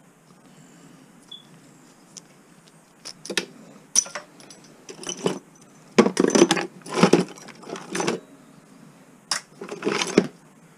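Pieces of scrap copper clinking and clattering as they are picked out and tossed into buckets and a plastic tote during sorting. The run of metallic clinks starts about three seconds in, with a busier flurry in the middle.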